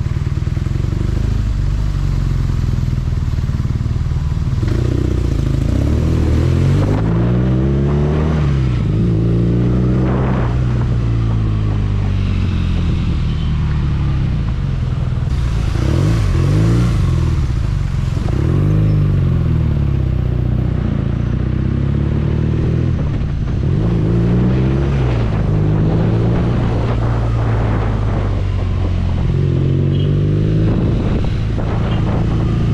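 BMW motorcycle's boxer-twin engine heard from the rider's seat, pulling away and running through the gears: its pitch rises and drops several times as it accelerates and shifts, over a steady rush of wind and road noise.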